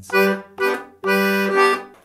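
DG melodeon (two-row diatonic button accordion) playing a slow phrase of tune notes, with left-hand bass and chord buttons sounding together with each note: two short notes, then a longer held one from about a second in.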